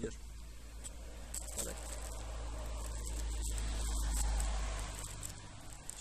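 A low rumble that swells to a peak about four seconds in and then fades, with faint high ticks over it.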